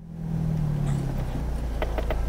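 Car engine and road noise heard from inside the car: a steady low hum that fades in and drops slightly in pitch.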